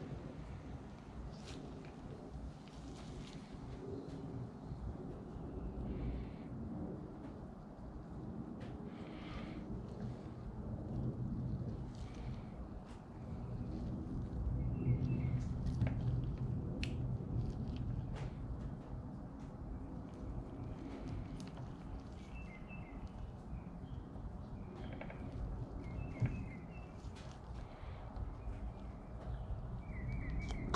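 Handling sounds of gloved hands fitting a fuel filter and spring clip onto a chainsaw fuel line: scattered small clicks and rubbing over a low, uneven rumble. Faint bird chirps come a few times in the second half.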